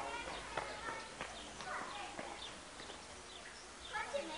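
Birds chirping in short, repeated calls, with a few sharp clicks among them.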